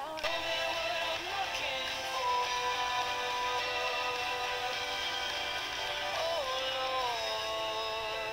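A recorded pop song playing. A singer holds long notes over the backing, and the melody steps down about six seconds in.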